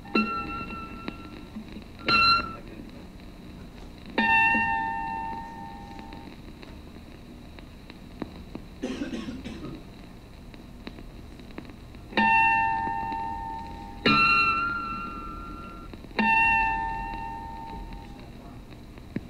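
Chime-like plucked electronic tones from an animation's soundtrack, played through speakers into a classroom: six notes at uneven spacing in two pitches, once both together, each starting sharply and ringing out over a second or two. A brief noise comes about halfway through.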